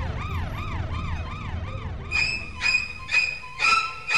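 Emergency-vehicle siren, a fast yelp sweeping up and down about four times a second over a low rumble, switching about two seconds in to a pulsed horn-like tone repeating about twice a second.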